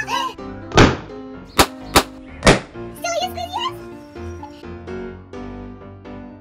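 Four sharp bangs in quick succession in the first two and a half seconds, plausibly latex balloons bursting where limonene sprayed from squeezed orange peel has weakened the rubber, over cheerful background music. A child's voice comes in briefly about three seconds in.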